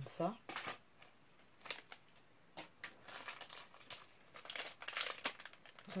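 Plastic bag and packaging crinkling and rustling in the hands in irregular bursts as items are handled and unwrapped.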